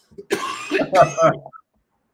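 A man coughing and clearing his throat, running into a short spoken 'um', about a second long in all.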